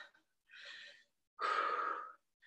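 A woman's breathing under exertion during reverse lunges with an overhead press: a faint breath about half a second in, then a louder, longer exhale near the end.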